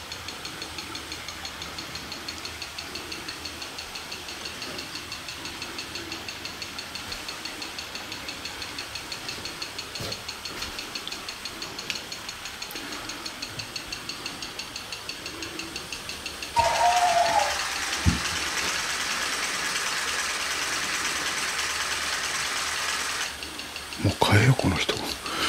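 A faint, rapid, even electronic ticking, joined about two-thirds of the way through by a loud hiss of static that cuts in suddenly, holds steady and cuts off abruptly shortly before the end, with a single thump in between.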